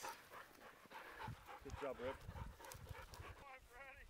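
A hunting dog panting quietly, with faint scuffing in the grass.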